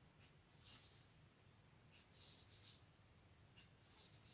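Crayola felt-tip marker drawing short strokes on paper: faint scratchy strokes, one about a quarter second in, one just before a second, a quick run of several around two seconds, and another near the end.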